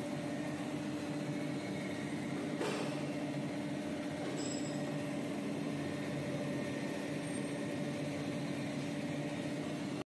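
Steady hum of a band saw machine for cutting jumbo toilet-paper rolls, running at an even level with a low drone, and one brief rustle or knock about two and a half seconds in.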